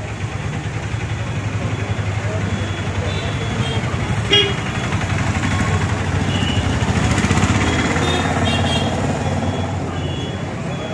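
Motor vehicles passing close on the road, their engine rumble swelling to a peak about seven seconds in, with a sharp knock about four seconds in and people talking in the background.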